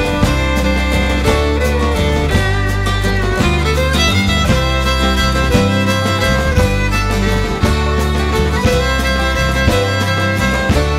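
Instrumental break of an Irish folk song: a fiddle plays the melody over acoustic guitar and a steady low bass line, with no singing.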